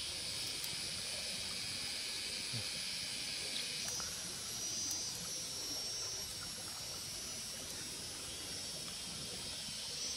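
A steady high-pitched drone of insects in the woods, with a few faint crackles from a small stick campfire.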